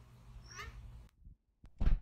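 A short rising, wavering pitched sound about half a second in. The background hush then cuts off, and a single loud thump comes near the end.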